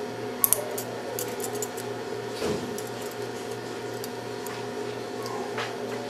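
Small metallic clicks of stainless steel surgical hemostats and wire being handled, two sharp ones about half a second in and fainter ticks after, over a steady low electrical hum.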